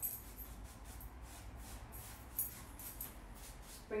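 Paintbrush loaded with chalk paint being stroked and dabbed on a wooden furniture pillar: faint, soft brushing at about three strokes a second, one a little louder about halfway through.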